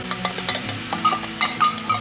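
Condensed cream of celery soup emptied from its can into a ceramic mixing bowl: a run of small clicks and scrapes over a faint steady hum.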